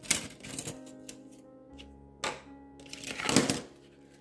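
Small metal scissors and sewing notions clinking and clattering against a plastic tub as they are handled, the loudest clatter a little after three seconds in, over soft background music.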